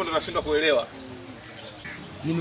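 A man's voice speaking briefly, then a dove cooing in the background: one short, steady low note about a second in.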